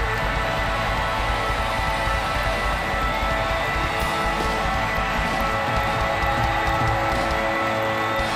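Live band of electric guitars and drums letting the song's final chords ring out, with crowd noise beneath; the drums drop away near the end.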